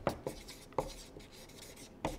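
Felt-tip marker writing on flip-chart paper, a few short, faint strokes.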